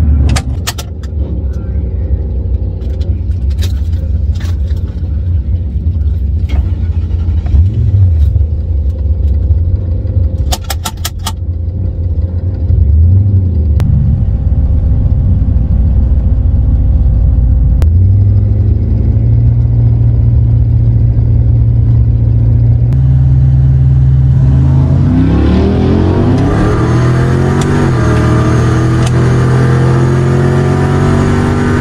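Drag-raced Lincoln Town Car engine heard from inside the cabin: idling with a few sharp clicks, then held at a steady higher speed about halfway through, then taken to full throttle near the end, its pitch rising steadily as the car accelerates off the line.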